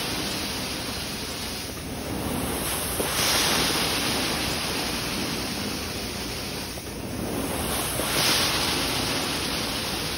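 Carpet-cleaning extraction wand spraying hot water and sucking it back out of the carpet: a steady, loud rushing hiss of suction that swells twice, about three seconds in and again about eight seconds in, as the wand is worked across the carpet.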